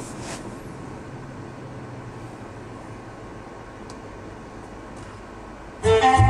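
Steady hum and hiss of a car cabin, with the air conditioning running. Near the end, music from the car's head unit starts suddenly as the internet radio stream begins to play.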